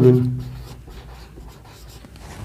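Marker pen writing on a whiteboard: a faint scratching of strokes, following a single spoken word at the start.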